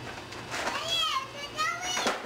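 Children's voices: high-pitched, bending calls and chatter starting about half a second in.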